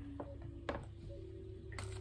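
Tarot cards being shuffled and cut by hand, giving a few soft clicks, over a faint held musical tone that steps up to a higher note about half a second in.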